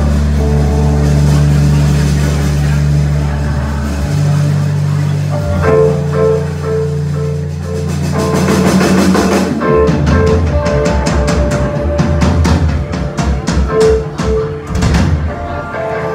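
Live rock band's instruments between songs. A held low bass drone lasts about four seconds. Then a guitar repeats a short figure, and from about ten seconds in scattered drum kit hits join it.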